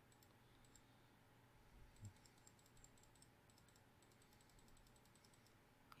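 Near silence: room tone with faint, quick clicking at the computer through the middle, and a soft knock about two seconds in.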